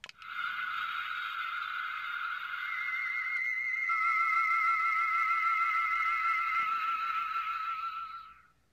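Ultra Replica Beta Capsule toy playing its transformation-cancel sound effect from its speaker, triggered by pressing the A and B buttons together. It is a sustained electronic tone. A second, higher tone joins about two and a half seconds in, and the lower tone then takes on a warble. All of it fades away at the end.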